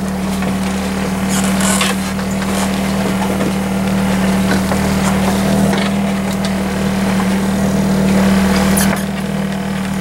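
Boat engine running at a steady low drone, with wind and rushing water noise over it.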